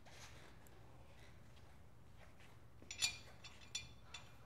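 Faint room tone, then a few short metallic clinks about three seconds in and again near the end as a steel lug nut is set onto a wheel stud on the brake rotor.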